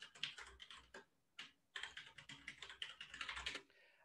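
Faint, rapid computer-keyboard keystrokes as a username and password are typed into a login form, with a short pause after about a second.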